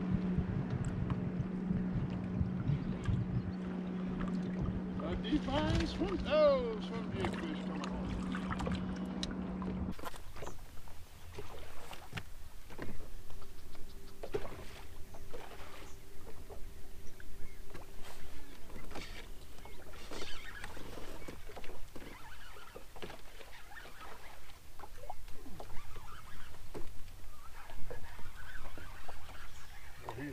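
A steady electric hum from a bass boat's bow-mounted trolling motor runs for about the first ten seconds, then cuts off abruptly. After that comes water slapping against the hull, with scattered light clicks and knocks as the angler casts and works a fishing rod and reel.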